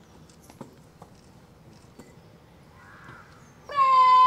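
Faint scattered clicks. Near the end, a loud, long drawn-out shouted drill command starts, held at one steady pitch, from the parade commander calling the cadets to order.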